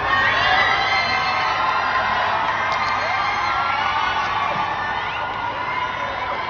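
A crowd of fans cheering and screaming, many high voices overlapping, swelling loud about as it starts and staying loud throughout.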